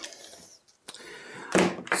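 Handling noises in a quiet room: a single sharp click about a second in, then a brief crinkle of a clear plastic bag as a packaged battery is picked up near the end.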